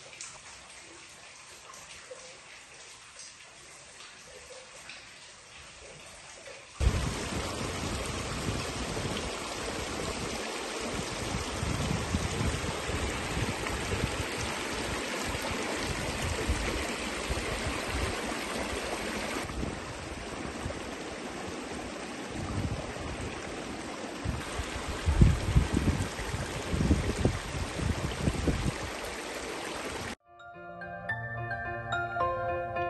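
A small mountain creek running and trickling over rocks, a steady rush of water. For the first several seconds there is only a faint, quiet water sound, then it cuts suddenly to the much louder running stream, with a few low rumbling bursts near the end.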